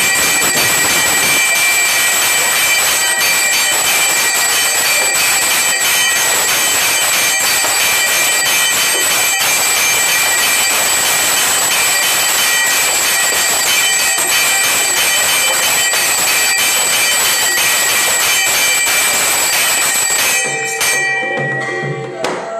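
Temple bells ringing loudly for the aarti, struck rapidly and without pause into a dense clangour with several steady high ringing tones. The din stops abruptly about twenty seconds in.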